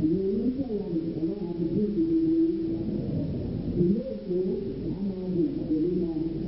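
Low voices chanting, several at once, in gliding lines with a held note about two seconds in.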